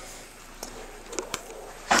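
Quiet room tone with a few faint clicks, such as a handheld camera makes while it is being swung around.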